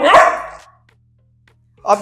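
Labrador retriever puppy giving a single short, loud bark at the treat held in a closed fist above it.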